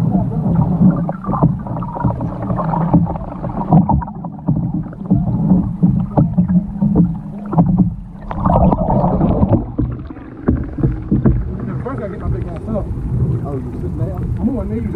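Muffled churning and sloshing of lake water around a submerged camera while a man floundering beside a capsized canoe moves through the water, with irregular dull knocks and thuds. The sound turns a little clearer near the end as the camera comes out of the water.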